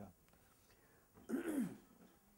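A man clearing his throat once, a short rough sound about a second and a half in, in an otherwise quiet room.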